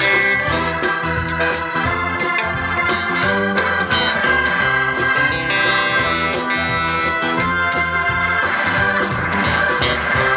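Live rock band playing an instrumental break with an electric organ out front, over steady drums and bass.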